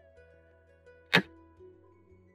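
A single sharp clack about a second in: the move sound effect of a xiangqi piece, the red chariot, being set down on the digital board.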